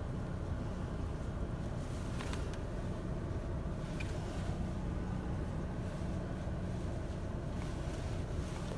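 Steady low rumble inside a parked car's cabin, with a couple of faint light taps about two and four seconds in.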